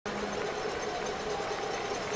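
Steady background noise of a baseball stadium crowd, an even murmur with no cheer or bat crack yet.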